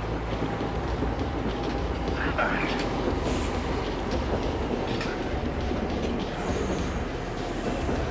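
A commuter train running along the tracks: a steady rolling rumble from the wheels on the rails.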